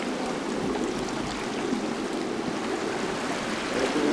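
Steady wash of sea surf on the shore, an even rushing hiss that swells slightly near the end.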